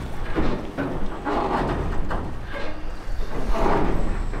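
Loose metal pieces hanging off the end of a pier as a wave baffle, clanging and clunking irregularly as small waves knock them about, a loud metallic banging over a low rumble.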